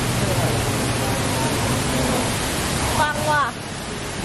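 A torrent of water from a theme-park flood effect pouring down close by, a loud steady rush. People's voices cry out briefly about three seconds in, and the rush eases slightly near the end.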